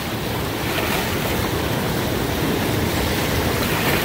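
Steady rushing of a fast-flowing river's whitewater rapids, with wind buffeting the microphone.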